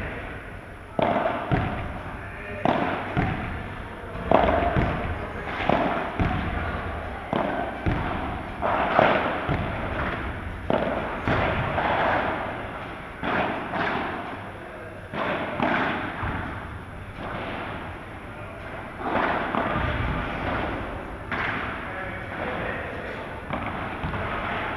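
Padel ball struck by solid padel rackets in a rally, with bounces off the court and glass walls: a string of sharp pops at irregular intervals of about one to two seconds, each echoing in a large indoor hall.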